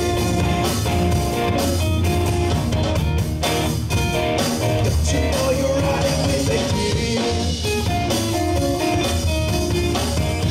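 A live blues-rock band playing: two electric guitars, electric bass and a drum kit, with sustained guitar notes over a steady beat.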